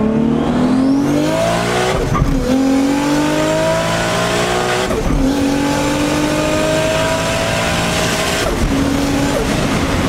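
Toyota Supra's engine under hard acceleration, heard from inside the cabin: the pitch climbs steadily in each gear and drops at upshifts about two, five and eight and a half seconds in.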